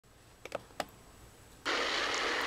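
Two light clicks, then about one and a half seconds in a steady hiss starts abruptly as the television soundtrack comes in.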